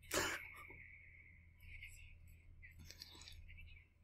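A man's short breathy laugh right at the start, then near-quiet room tone with a faint steady hiss and a couple of tiny ticks.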